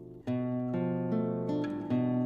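Background music: a solo guitar playing a slow passacaglia. A sounding chord fades out, a new chord is plucked about a quarter second in, and single notes then change roughly every half second.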